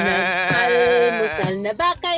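A voice holding one long sung note with a wide, wavering vibrato, breaking off about a second and a half in, then a short sung syllable near the end.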